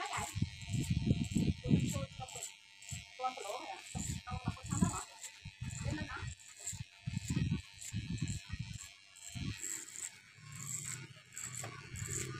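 Electric hair clipper running as it cuts short hair up the back of the neck against a comb, with strokes repeating every fraction of a second. Irregular low voice-like sounds are louder than the clipper at times.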